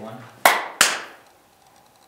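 Two sharp claps about a third of a second apart, each with a short echo, slating the film take just before "action" is called.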